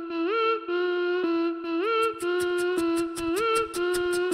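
Live vocal looping: a hummed two-note phrase, a held note stepping briefly up and back, played back by a loop station and repeating identically about every second and a half. About halfway through, quick, crisp beatboxed hi-hat ticks are layered on top.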